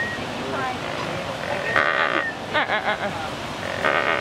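A flock of lesser flamingos calling, with repeated nasal honks and chatter. The loudest burst comes about two seconds in.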